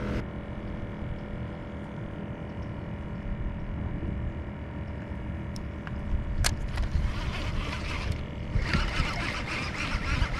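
Boat motor running steadily, a hum with several even tones. Two sharp clicks come in the middle, and a louder rushing noise over the last few seconds.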